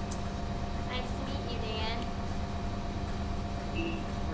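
Steady low drone of a bus running, heard from inside the passenger cabin, with a constant hum under it.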